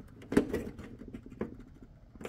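Scattered small plastic clicks and knocks from a hand twisting a tight reverse-light bulb socket inside a Nissan Rogue Sport's taillight housing. The loudest click comes about a third of a second in.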